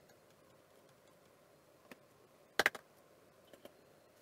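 A few light clicks and taps from handling at an electronics repair bench. The loudest is a quick cluster of about three clicks a little past halfway, with a single small click before it and two faint ticks near the end.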